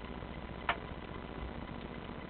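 Steady low hum from the band's guitar amplifiers idling between songs, with one sharp click a little after half a second in.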